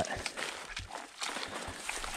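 Footsteps and rustling through dry, matted grass and brush on soggy ground: soft, irregular crunches and crackles.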